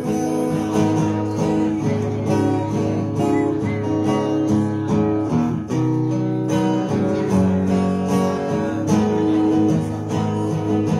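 Acoustic guitar strumming chords in a steady rhythm, with no singing over it.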